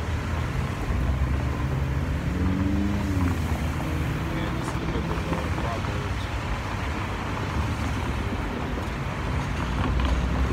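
Road traffic passing: a steady low rumble of cars going by, with a brief rising and falling pitched sound around three seconds in.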